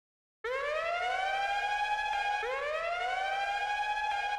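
Siren wail starting about half a second in, its pitch rising and levelling off, then rising again about two seconds later, with fainter echoing repeats trailing each rise.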